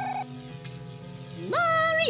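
Cartoon soundtrack with no dialogue: a brief clicking, mechanical sound effect at the start over faint steady background music. About one and a half seconds in, a loud pitched musical note slides up and holds.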